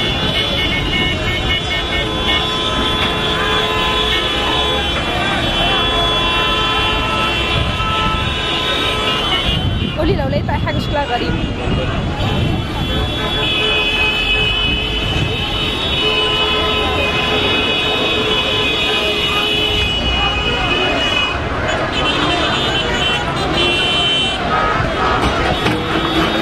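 Vehicle horns sounding in long held blasts over street traffic, with many voices mixed in. The horns drop out for a couple of seconds about ten seconds in, then start up again.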